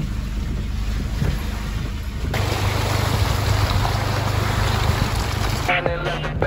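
Low engine and road rumble of an off-road vehicle heard inside its cab on a rough mud trail. A little over two seconds in it cuts abruptly to louder, hissy noise over a steady low engine drone, and music comes in near the end.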